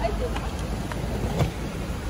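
Road traffic going past: a steady low rumble of cars, with a faint click about one and a half seconds in.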